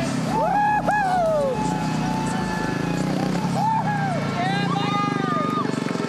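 Excited whooping and shouting, long high rising-and-falling calls from people celebrating a speedway win, over a steady low engine-like drone.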